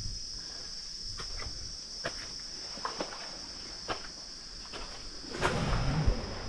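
Steady, high-pitched drone of tropical insects, with a few light clicks about once a second and a louder rustle near the end.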